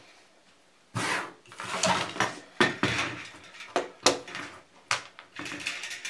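Hands handling a metal fluorescent light fixture and its wires: a run of light clicks and knocks with rustling between them, starting about a second in.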